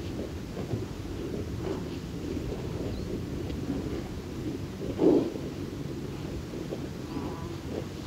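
Open heathland ambience from a summer early morning: a steady low rumble of air and wind on the heath, broken by one louder, short low blast about five seconds in. A fly buzzes briefly near the end.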